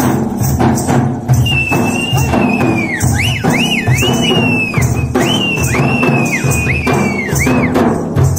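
A band of side-slung double-headed dhol drums played with sticks in a fast, steady rhythm. From about a second and a half in, a high whistling tone joins, held at first and then swooping up and down again and again over the drumming.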